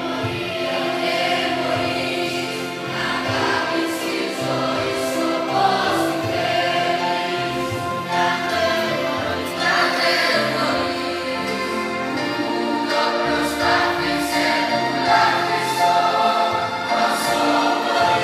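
Mixed youth choir of boys' and girls' voices singing a Greek choral song in sustained, held phrases.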